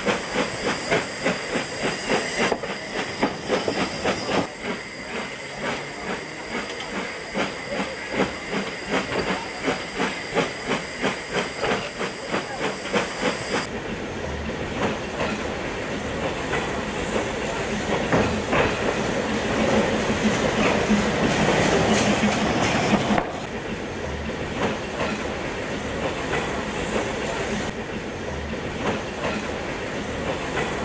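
Narrow-gauge steam locomotive "Plettenberg" working: a quick, steady beat of exhaust chuffs, then louder steam hiss and running noise that cuts off suddenly about two-thirds of the way through, followed by quieter rolling.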